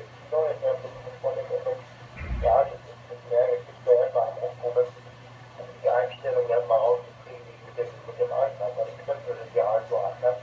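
Speech only: a voice talking over a radio link, heard through a transceiver's loudspeaker, thin and narrow-band, with short pauses and a steady low hum underneath.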